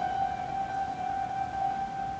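Instrumental classical music: a single long note held steadily by a melody instrument, without fading.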